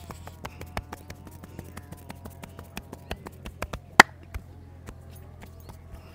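Hands tapping and slapping a man's head and hair in quick, irregular strokes during a head massage, with one loud, sharp slap about four seconds in.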